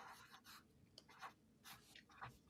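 Faint pen scribbling on paper: a handful of short, scratchy strokes as an answer is written down.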